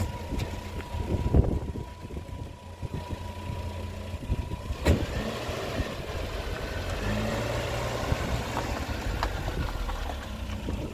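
Paykan sedan's engine idling, then running steadily and a little louder in the second half as the car pulls away. A single sharp knock sounds about five seconds in.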